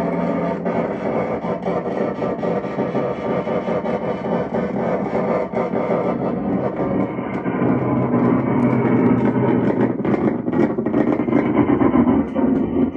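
Live experimental electronic noise music from a tabletop synthesizer and effects rig: a dense, distorted drone full of crackles. About six seconds in the highest tones drop away, and the low-mid rumble swells louder toward the end.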